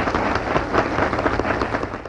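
Theatre audience applauding at the end of a song: dense clapping from many hands, dropping away right at the end.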